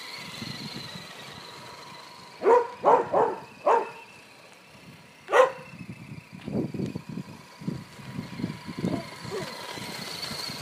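Faint steady whine of an Axial SCX10 RC crawler's electric drivetrain as it tows a loaded trailer over gravel. A dog barks four times in quick succession and once more a couple of seconds later, the loudest sounds here, followed by irregular rough crunching noise.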